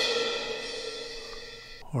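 Sampled suspended cymbal from the Wavesfactory Suspended Cymbals library ringing after a strike, its shimmer fading slowly. It is cut off abruptly by the muffle near the end.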